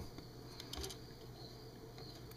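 Faint handling of an opened plastic bug zapper racket, with a few soft, short clicks a little over half a second in over a low room hum.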